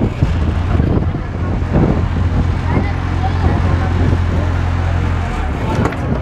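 Speedboat engine running at a low, steady idle while the boat docks, cutting out about five seconds in. Voices over it.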